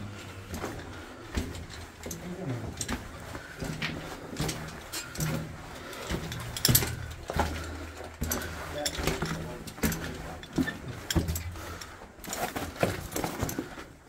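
Footsteps crunching and scuffing on loose rock and rubble in a mine tunnel: an irregular run of short crunches and clicks, with one sharper knock about halfway through.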